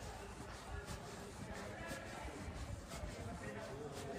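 Indistinct voices in the background with faint music, no words clear enough to make out.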